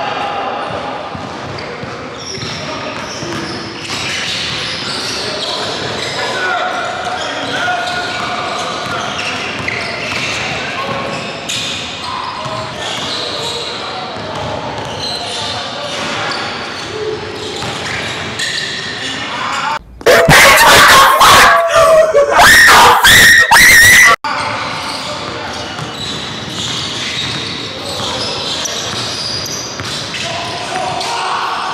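A basketball bouncing on a hardwood gym floor amid players' indistinct voices, echoing in a large hall. About two-thirds of the way through, a very loud, distorted burst lasting about four seconds cuts in and stops suddenly.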